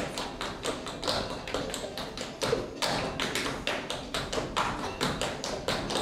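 Tap shoes striking the stage floor in a quick, uneven tap-dance rhythm, several taps a second, with no music behind them.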